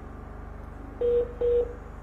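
Two short beeps close together about a second in, each a steady tone of about a quarter second, over a steady low hum.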